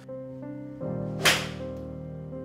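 A single sharp swish-and-strike of a golf iron hitting a ball, about a second in, over soft background music with sustained notes.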